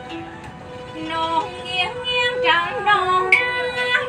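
A woman singing a Huế folk song (ca Huế) in Vietnamese, accompanied by traditional string instruments. Her voice comes in about a second in, sliding and ornamented over a held instrumental note.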